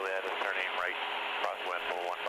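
A man's voice through the aircraft's radio and intercom audio, thin and cut off at the top, with a steady hiss behind it.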